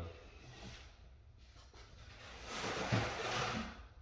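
Water running as soapy water is set up: a rushing hiss that swells about two and a half seconds in and stops shortly before the end, after a stretch of faint handling noise.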